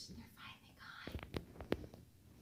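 A woman whispering quietly, then a few short sharp taps and rustles in the second half.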